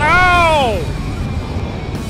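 Cartoon explosion sound effect: a low rumble that slowly fades, under a high-pitched voice crying out that slides down in pitch and breaks off within the first second.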